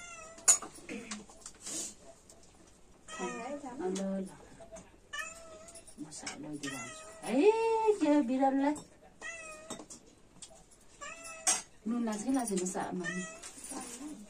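A cat meowing over and over, short wavering calls every second or two, with low voices in between.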